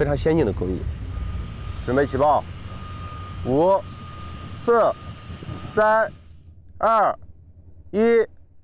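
A man speaking in short phrases, with pauses between them, over a low steady rumble from the open-pit mine.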